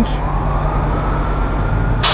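Detroit Diesel Series 60 12.7-litre inline-six diesel idling with a steady low hum, under a faint steady high whistle.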